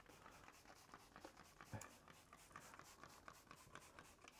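Faint, quick scratchy ticks, several a second, from a spray bottle being worked over a glass lightboard to clean it.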